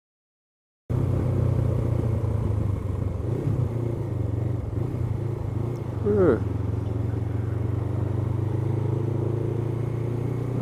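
Silence for about the first second, then a Honda CBF500 motorcycle's engine running steadily while cruising in traffic, heard from the rider's own helmet camera with road and wind noise. A short voice-like sound comes about six seconds in.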